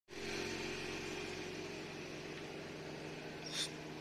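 Steady low hum of an idling vehicle engine, with a brief higher sound near the end.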